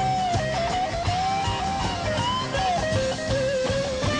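Live rock band playing an instrumental passage: a single lead line with bent and sliding notes, most likely electric guitar, over bass and drums.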